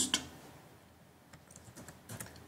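A few faint computer keyboard keystrokes, clicking in quick succession in the second half.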